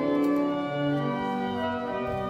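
Church organ playing slow, sustained chords that change every half second or so: a postlude after the service.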